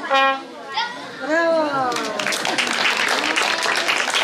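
Trumpet ending a short fanfare: a brief note, then a longer note that falls in pitch. Applause starts about two seconds in and carries on.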